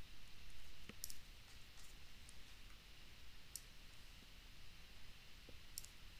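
About half a dozen faint, irregular clicks of a stylus tapping and writing on a touchscreen, over a low steady hum.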